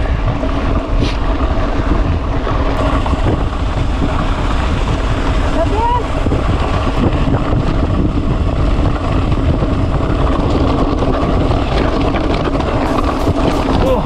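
Mountain bike riding fast on a gravel road, heard from a handlebar camera: a steady, loud rumble of wind buffeting the microphone mixed with the tyres rolling over gravel.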